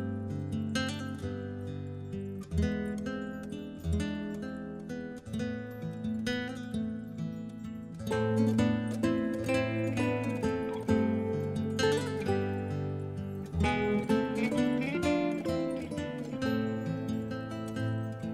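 Instrumental music led by acoustic guitar, with plucked and strummed notes and no singing.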